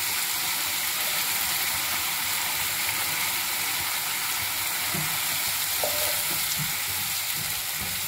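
Wet ground onion-and-coconut masala paste sizzling steadily in hot oil in a nonstick kadhai, with a spatula scraping it out of a mixer jar and stirring it in.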